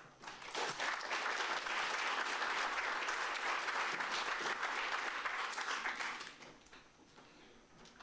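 Audience applauding: many hands clapping together. It starts about half a second in and dies away just after six seconds.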